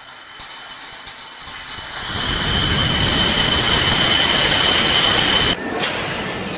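Loud, sustained crashing noise of tall stacks of crates collapsing. It builds over about two seconds into a hissing rush with a steady high ring and cuts off suddenly.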